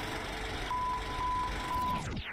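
The label intro of a music video playing back: a rumbling noise with a steady high beep that sounds three times, starting under a second in.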